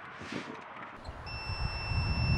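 A short hiss of pelleted seed pouring into a plastic seeder hopper. About a second in, it gives way to wind rumble on the microphone and a steady high-pitched electronic beep tone that holds on.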